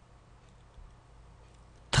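Near silence: room tone in the pause between spoken phrases, with a man's voice starting right at the end.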